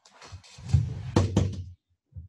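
Knocks and thuds of a person moving about and handling cables and equipment at a desk, with two sharp knocks a little after halfway.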